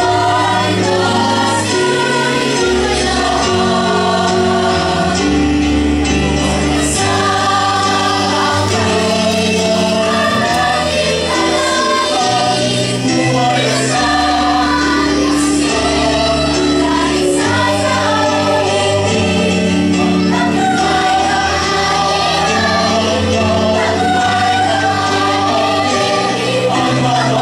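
A mixed choir of children and adults singing together over an instrumental accompaniment, with its bass notes held for a couple of seconds each.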